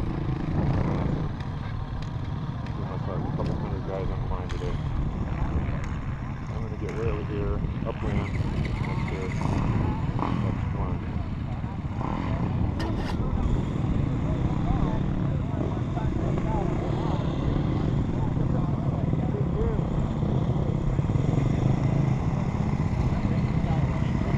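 Dirt bike engine running steadily at low speed, heard close up, with voices of the people around it.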